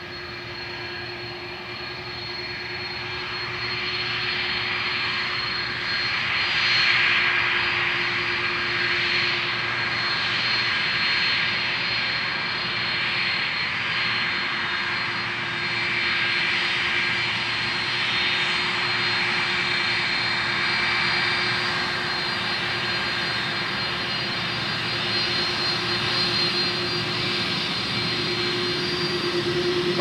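Airbus A330-200's twin turbofan engines at taxi power as the airliner rolls toward the runway lineup: a steady jet whine with a few held tones. It grows louder over the first several seconds as the aircraft comes closer, then holds level.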